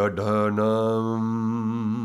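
A man's voice chanting a Sanskrit alphabet syllable in a low, steady monotone. A brief consonant break comes at the start, then the syllable is held as one long, even note.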